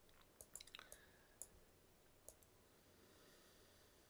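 Near silence with several faint, sharp clicks scattered through the first two and a half seconds.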